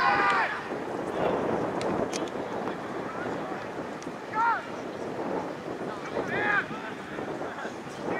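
Wind buffeting the microphone on an open football ground, with short distant shouts of people calling out three times: at the start, about four and a half seconds in, and about six and a half seconds in.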